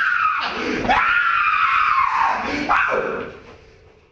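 A man screaming in a high-pitched falsetto: three long, drawn-out screams, each arching up and falling away in pitch, the last one dying out near the end.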